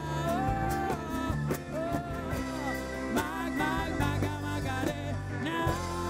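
Live band playing a song: a sung lead vocal over guitars and keyboard.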